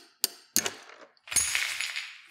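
A metal rod taps twice against a glass beaker of dilute acid. About 1.4 seconds in there is a sudden crack and a rush of splashing as the beaker breaks and the acid spills out. The glass was probably left under internal stress by overheating in earlier microwave plasma runs.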